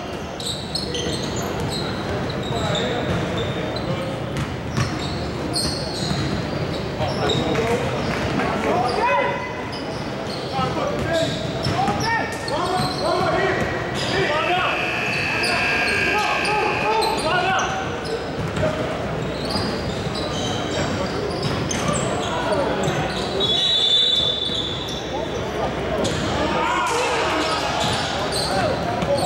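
A basketball being dribbled on a hardwood gym floor, with indistinct voices of players and onlookers calling out in a large echoing gym.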